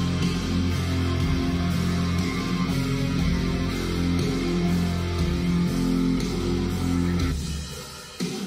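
Playback of a slow death-metal recording through studio monitors: heavily distorted guitars over drums with a lot of room sound and distortion on them. The music falls away sharply near the end.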